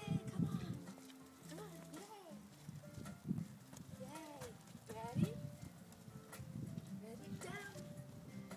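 A dog whining and yipping in short cries that rise and fall, the strongest about four and five seconds in, over a background pop song.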